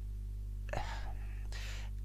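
A hesitant 'uh' about a second in, followed by a breathy intake of breath, over a steady low electrical hum.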